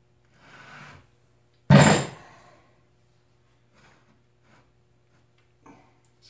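A single loud, sharp thunk about two seconds in, dying away within half a second, after a fainter rustle.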